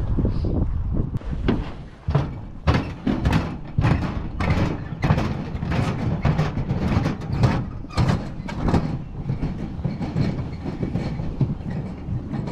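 Footsteps knocking on the planks of a wooden boat dock, about two to three a second, over low wind noise on the microphone.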